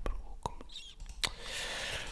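A man's quiet, whispered muttering under his breath, with two short sharp clicks, one about half a second in and one about a second and a quarter in.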